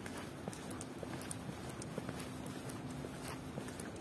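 Footsteps of someone walking on a paved pavement: sharp, irregular heel clicks, about two to three a second, over a steady background of city noise.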